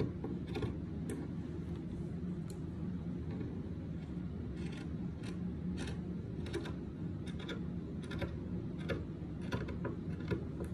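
Scissors cutting through cloth: a series of irregular short snips and clicks from the blades, over a steady low hum.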